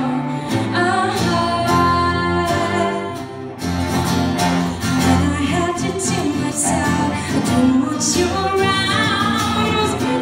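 A woman singing to acoustic guitar and cello, with sustained low bowed-string notes under the voice and a brief break between phrases about three and a half seconds in.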